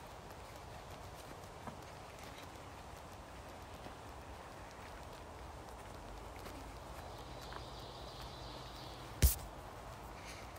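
Footsteps on a leafy forest trail, faint and uneven, with one sharp, loud click about nine seconds in.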